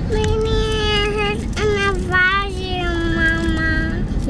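A young child's voice holding three long, drawn-out vocal notes, the last slowly falling in pitch, over steady road noise inside a car cabin.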